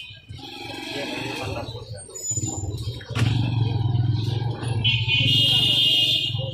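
Voices of people talking around the butcher's stall, with a couple of short knocks of the cleaver on the wooden chopping block, and a high-pitched tone near the end.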